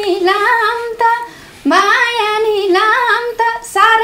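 A woman singing a Nepali dohori folk melody in a high voice, her held notes bending up and down, with a short break just over a second in.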